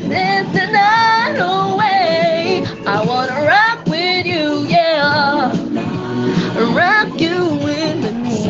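A woman singing over a backing music track, her voice gliding and wavering in pitch through long held notes, with short breaths about three and four seconds in.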